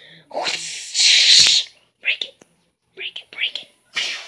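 A child's breathy whispering and hissing mouth noises in several bursts: one long loud one in the first second and a half, with a sharp knock near its end, then a few short ones.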